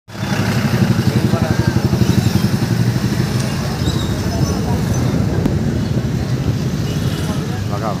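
A motorcycle engine running close by while riding along the street, with a fast, even low pulsing over the hum of surrounding traffic.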